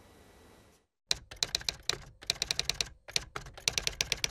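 Typing sound effect: rapid keystroke clicks in three runs with short breaks between them, starting about a second in.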